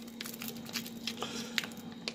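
Soft wet handling of raw chicken pieces as blended seasoning is added to them, with a few faint, brief clicks, over a faint steady hum.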